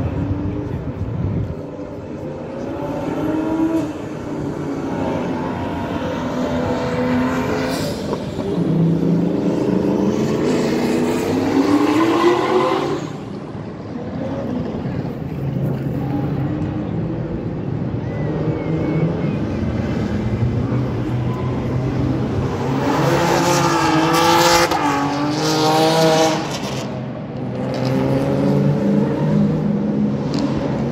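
Drift cars' engines revving hard, their pitch rising and falling as they slide through the corner, loudest about a dozen seconds in and again around 24 seconds, with tyre squeal over the engine noise.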